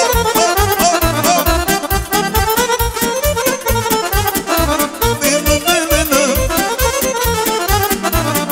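Romanian party music played live by a band: two accordions leading the melody with a saxophone, over a fast, steady beat from an arranger keyboard.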